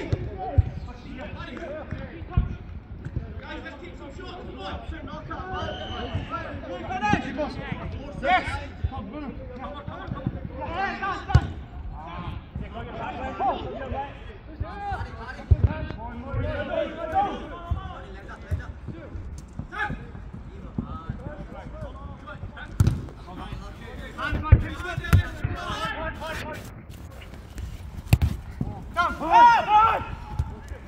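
A five-a-side football being kicked on an artificial pitch: a string of short, sharp ball thuds at irregular intervals, with players calling and shouting to each other between them.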